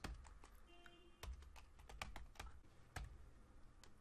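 Faint typing on a computer keyboard: a run of irregular key clicks.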